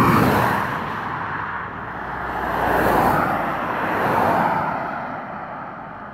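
Cars passing by on an asphalt road: a car passing close at the start, then the tyre and engine noise of another swelling to a peak about halfway through and fading away.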